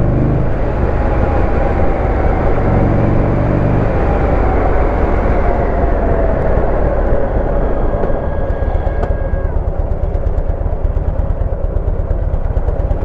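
Buell XB12X Ulysses V-twin running under way with heavy wind rush on the microphone; the engine note falls slowly as the bike slows for a red light, and the sound grows more uneven near the end as it comes to a stop.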